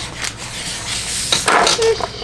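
Hard plastic toy capsule being handled, plastic rubbing and scraping, with a sharper scrape about a second and a half in.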